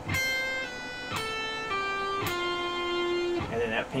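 Electric guitar playing a short descending legato phrase in a clean tone: each picked note is followed by a pull-off to a lower note, and the last note rings for about a second. A few words of speech come in near the end.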